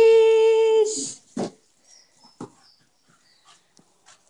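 A dog gives one long whining cry lasting about a second, rising at the start and then holding a steady pitch. It is followed by a few faint sharp taps.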